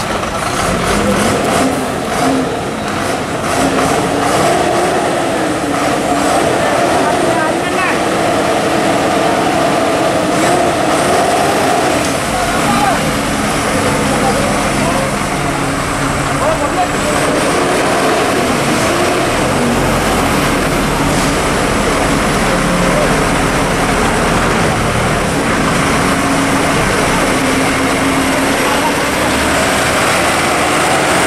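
Heavy Ashok Leyland truck's diesel engine running as it moves slowly along a muddy track, its low rumble growing stronger partway through, with the voices of a crowd talking over it.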